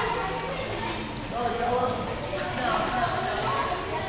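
Indistinct voices of children and adults talking in an indoor swimming pool hall, over a continuous wash of water splashing from swimmers.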